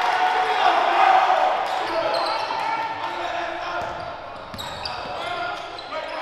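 Gym crowd and bench shouting and cheering, loudest in the first second and fading away, with a basketball bouncing on the court.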